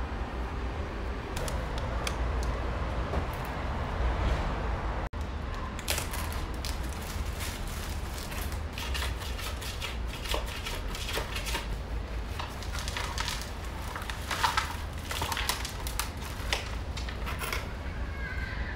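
A gloved hand brushing and smoothing loose potting soil in a plastic planter, a soft rustle; then, after a break, a hand scraping caked soil off the side of a plastic plant pot to loosen it for repotting, many short scratchy crackles. A steady low rumble runs underneath.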